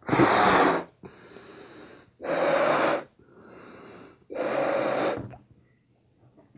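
A latex birthday balloon being blown up by mouth in three long puffs, with quieter breaths drawn in between.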